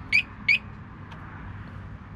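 Two short, high bird chirps, each a quick upward sweep, about a third of a second apart near the start, over steady low outdoor background noise.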